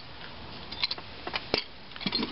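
A few light metallic clicks and taps, the sharpest about one and a half seconds in, from a homemade clamp-type valve spring compressor being slackened on a small motorcycle cylinder head as the valve spring is released.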